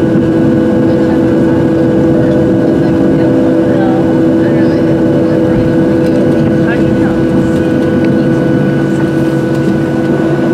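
Steady cabin noise inside a Boeing 737-700 taxiing after landing. The constant hum and whine of its CFM56-7B engines at idle is heard through the fuselage, with faint voices beneath.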